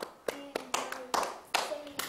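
Hand claps in a slow, even rhythm, about two or three a second, with faint voices between them.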